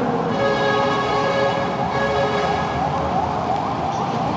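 A siren sounding over steady held tones, its pitch sweeping up in quick repeated rises, about four a second, through the second half.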